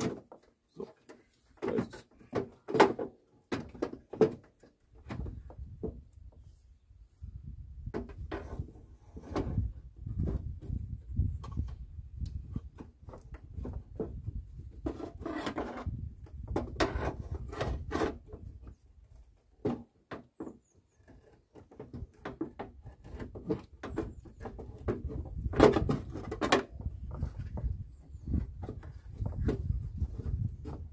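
Irregular knocks, clunks and scrapes of a long bar being worked inside a car's front wing behind the headlight, levering the dented sheet metal back out. The knocks come in several clusters, the loudest about three seconds in and again near the end, over a low rumble.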